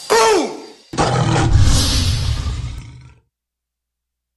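Logo-sting roar sound effect: a short growl that rises and falls in pitch, then about a second in a louder, rougher roar with a deep rumble that fades out over about two seconds and stops.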